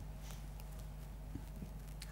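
Quiet room tone: a low steady hum with a few faint, scattered knocks and taps.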